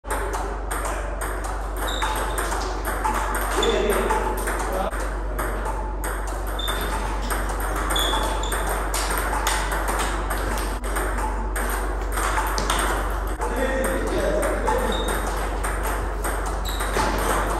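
Table tennis rally: a plastic ball clicking quickly and irregularly off the bats and bouncing on the table, several strokes a second, over a steady low hum.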